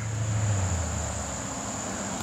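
A road vehicle's engine drone coming closer, a low sound that swells in the first second and then settles a little lower in pitch, over a steady high buzz of insects.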